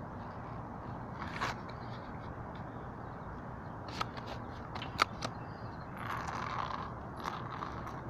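Steady outdoor background hiss with a handful of sharp metallic clicks and a brief rustle: a metal chain dog leash clinking and the camera being handled close to the microphone.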